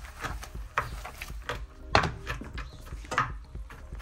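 A few sharp knocks on a wooden cutting board as nuts are chopped into small pieces, the loudest about two seconds in.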